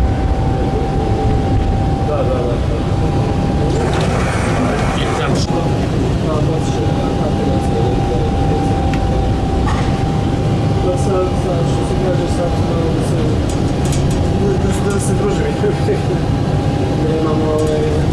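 Tram running along street track, heard on board: a loud, steady low rumble of the running gear with a constant thin whine. There are a few clicks and knocks about four to five seconds in and light ticking later on.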